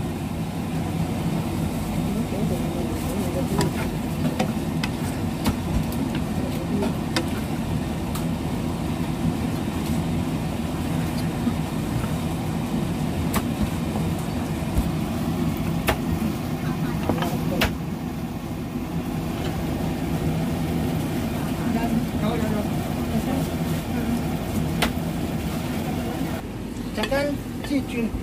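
Wooden spatula clicking and scraping against a non-stick wok as broccoli is stir-fried, a sharp tap every few seconds over a steady low background rumble.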